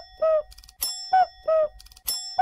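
Intro jingle of a chime sound effect: a bright bell strike followed by two short falling notes, repeating about once a second.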